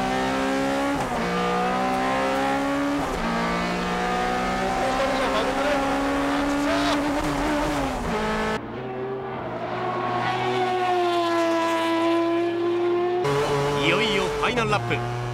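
In-car sound of a front-wheel-drive, Honda-engined CR-X race car at full throttle, its engine pitch dropping sharply and climbing again twice in the first few seconds as it shifts up. The car's gearbox seems to be jumping out of gear. About two-thirds of the way through, the sound changes to the high-revving 20B three-rotor engine of a naturally aspirated Mazda RX-7 FD3S, heard from outside as it dips in pitch through a corner and then rises.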